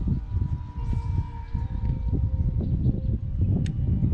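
Wind buffeting the microphone, an uneven low rumble, with a faint steady high hum and a single sharp click near the end.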